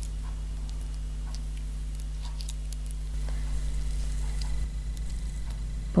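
Faint, scattered light clicks of knitting needles and yarn as stitches are worked, over a steady low hum.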